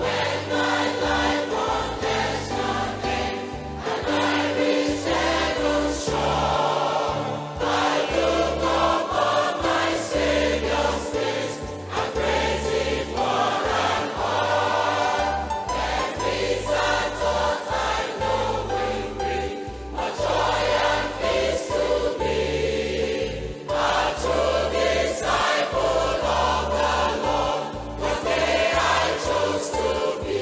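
Large mixed choir of men and women singing a gospel hymn together over electronic keyboard accompaniment with a steady bass line.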